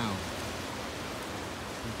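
Steady, even rushing noise of ocean surf with no single wave standing out. A man's voice trails off at the start and begins again near the end.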